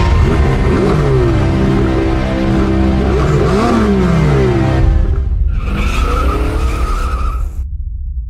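Music laid over car sound effects: engine noise sweeping up and down in pitch, then a high squeal like tyres skidding that cuts off sharply near the end, leaving a low rumble that fades.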